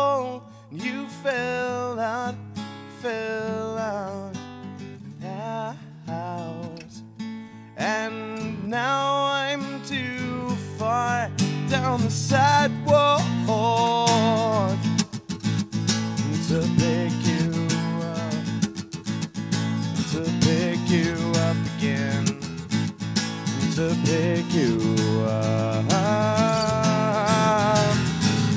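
Solo acoustic guitar with a man singing long, bending notes over it; about halfway through the singing drops back and the guitar strumming gets busier and denser.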